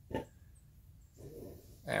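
Faint animal sounds: a brief sharp call just after the start, then a lower, longer sound lasting about half a second before the talking resumes.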